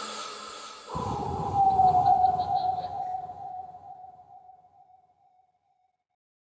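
A sudden deep rumbling hit about a second in, carrying one ringing tone that slides slightly lower and fades away over about four seconds, after a short tail of chant-like music.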